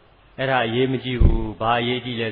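A monk's voice preaching in Burmese in two short phrases with a brief pause between them, after a moment's near silence.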